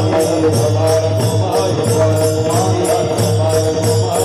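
Devotional kirtan music: small hand cymbals (taal) struck in a steady rhythm about four times a second over a held drone, with a group chanting.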